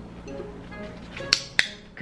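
Two sharp clicks a quarter second apart, about a second and a half in, from a pet-training clicker marking the parrot's correct recall, over background music.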